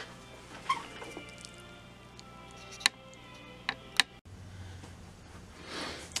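Faint radio audio from the NRI Model 34 signal tracer's speaker, with a few sharp clicks in its last second or so, then a low hum after a break.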